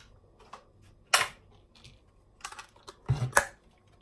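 A few sharp clicks and knocks of kitchen items being handled: a loud click about a second in, then a quick cluster of knocks near the end.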